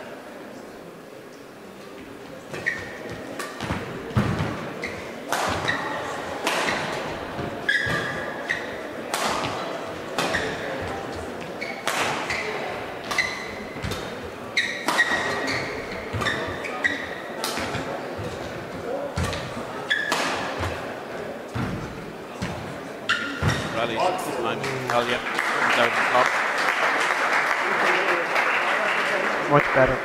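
Badminton rally: racket strikes on the shuttlecock about every second and a half, mixed with short squeaks of shoes on the court. The rally ends about 24 seconds in, and crowd applause follows.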